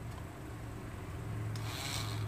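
Electric nail drill running with a steady low hum, its bit rasping against an acrylic nail to take off the polish in the last half second.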